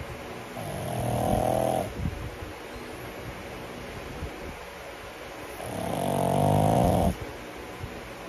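A pug snoring loudly in its sleep: two long snores, each swelling and then cutting off sharply, about five seconds apart, with quieter snuffly breathing between them.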